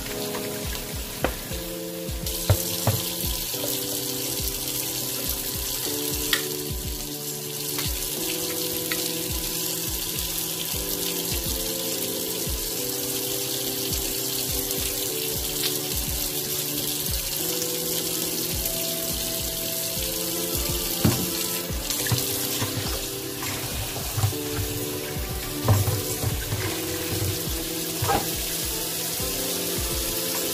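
Kitchen tap running into a bowl in a stainless steel sink, starting about two seconds in, over background music with a steady beat. A few sharp knocks from handling things at the sink.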